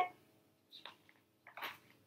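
Paper page of a large picture book being turned: two short rustles, the first a little before a second in and the second, slightly louder, about a second and a half in.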